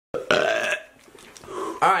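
A man lets out one loud, pitched belch lasting a little over half a second, right at the start, then breaks off.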